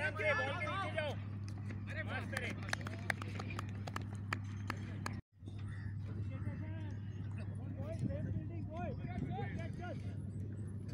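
Outdoor cricket ground: players and spectators shout as a lofted shot goes up, followed by scattered sharp claps, all over a steady low hum. The sound drops out briefly at a cut about halfway, then more voices call out across the field.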